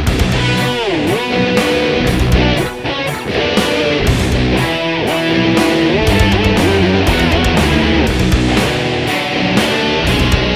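Instrumental rock: an electric guitar lead played with wide pitch bends and dives, over bass and a steady drum beat.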